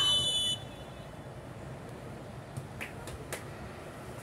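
Referee's whistle: one short, shrill blast of about half a second, stopping play.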